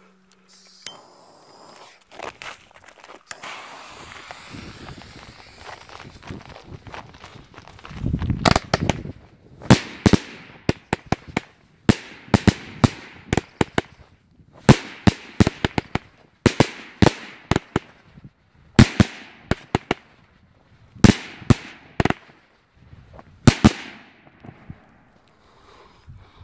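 25-shot 'God of Thunder' consumer firework cake firing. About eight seconds in, the shots start: a quick run of sharp bangs, often in clusters of two or three, lasting about sixteen seconds before stopping.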